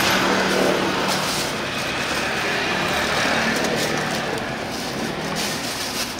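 Steady motor-vehicle noise, a low engine hum under a broad hiss, with the hum dropping away about five and a half seconds in.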